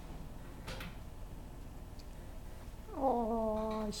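Domestic cat giving a single meow about three seconds in, starting high and dropping quickly to a steady, held pitch for about a second.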